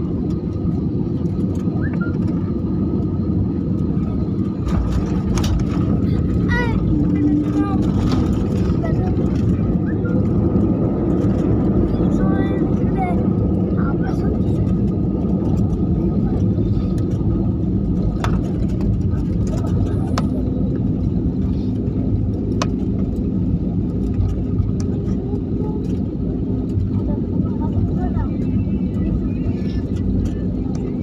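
Airliner cabin noise on landing: a loud, steady roar of the engines and the wheels rolling down the runway, a little louder for several seconds after touchdown as the plane slows with its spoilers up. Faint voices and a few light clicks sound over it.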